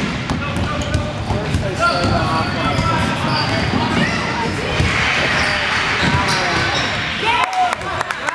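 A basketball bouncing on a hardwood gym floor during play, with sneakers squeaking on the court and players' and spectators' voices in the background.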